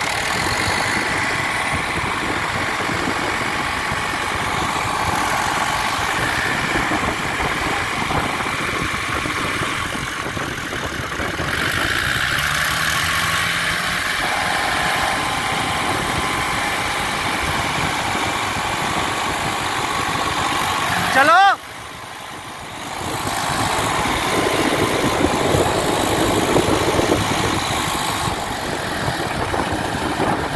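Tractor diesel engines running under load as a Farmtrac 60 tows a mud-stuck Mahindra 575 DI tractor on a chain. About 21 seconds in a man gives a short loud shout of "chalo"; the engine sound drops for a moment, then comes back louder.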